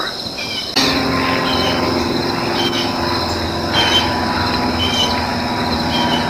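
Steady high chirring of insects, joined about a second in by a sudden, steady low mechanical hum, with a few short high chirps scattered over it.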